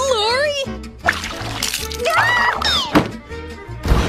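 A cartoon boy's voice stammering in a wavering warble, then a high gliding squeal about two seconds in, over light background music.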